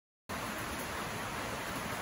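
Heavy rain falling, a steady even hiss that cuts in suddenly a moment after the start, out of silence.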